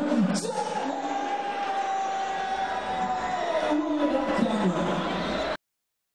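Ring announcer calling through a public-address system in a long, drawn-out voice, holding and stretching the words over a murmuring crowd. The sound cuts off suddenly near the end.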